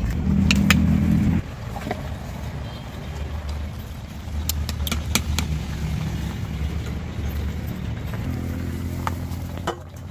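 A plastic ladle scraping and knocking against a clay cooking pot as thick rice pudding is stirred and scooped, in scattered sharp clicks. Under it runs a low, steady motor hum, loudest at the start and again near the end.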